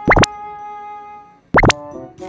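Two quick rising sweep sound effects about a second and a half apart, each followed by a held musical tone, over background music.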